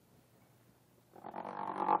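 About a second of near silence, then a man's voice holding one steady droning vowel, like a drawn-out 'uhh' or hum, growing louder as it runs into speech.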